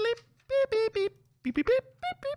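A voice making a sing-song run of short, high-pitched "boop" notes, about half a dozen, to imitate a computing machine working out a result.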